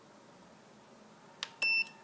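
Turnigy 9X radio transmitter's key beep: one short, high, steady beep about one and a half seconds in, just after a soft click of a menu button being pressed.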